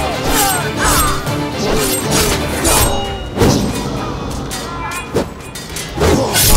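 Battle sound effects over a dramatic music score: repeated sudden clashes and blows of swords and shields, with fighters' shouts and grunts.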